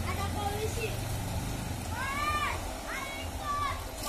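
Children shouting and calling out in high voices while playing in floodwater. A few short arching shouts come from about halfway in, over a steady low rumble.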